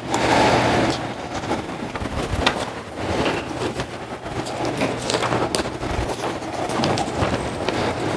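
Paper rustling as a thick stack of printed notes is leafed through page by page: a continuous crackly rustle with scattered small crinkles and taps.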